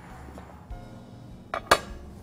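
A dish set down on a countertop with a single sharp clink near the end, against an otherwise quiet background.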